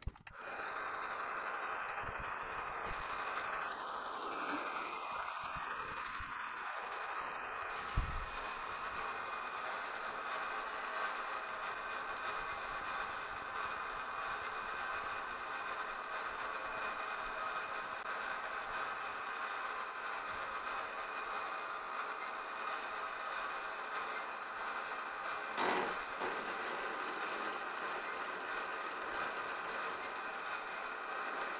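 Metal lathe starting up and running steadily, its spinning chuck and drive giving an even whine, while a countersink and drill bit work into a case-hardened steel ball. A single knock about eight seconds in and a short louder rush of noise near the end.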